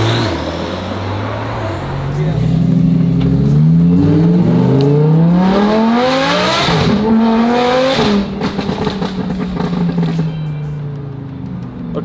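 A sports-car engine revving up in a long rise in pitch, then a second rise, after which it settles to a steadier, lower note that fades near the end.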